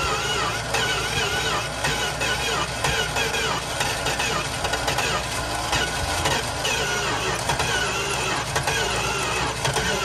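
Background music with a wavering sung melody over a steady low bass line.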